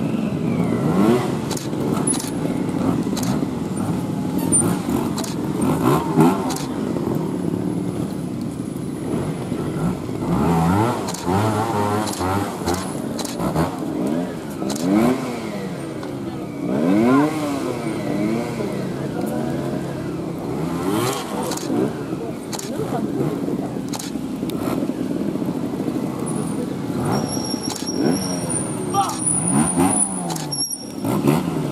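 Trials motorcycle engines revving in short, quick blips, the pitch sweeping up and down as riders work the throttle through an obstacle section, mixed with repeated single-lens-reflex camera shutter clicks.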